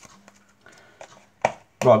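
A few faint clicks and taps from a deck of playing cards being handled, the loudest about one and a half seconds in, then a man's voice says "Right" near the end.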